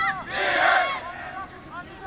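Girls' voices shouting and calling out across the field, with one loud, drawn-out shout about half a second in.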